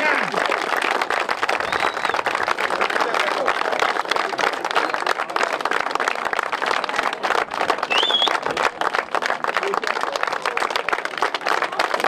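A crowd applauding steadily, a dense patter of hand claps that thins out about two-thirds of the way through.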